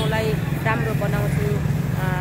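A woman talking over a steady low hum of street traffic, with motorcycles and auto-rickshaws going by.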